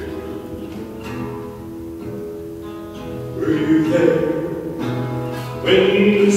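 Acoustic guitar played with sustained chords, a quieter instrumental stretch at first; a man's singing voice comes in over it about three and a half seconds in and again near the end.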